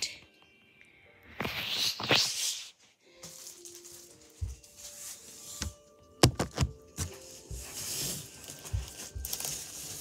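A cardboard box and the plastic-wrapped folding mat inside it being handled, starting about a second in: rustling and scraping, with a few sharp knocks around the middle.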